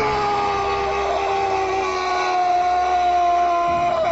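A man's long, held yell on one steady pitch, sinking slightly as it goes.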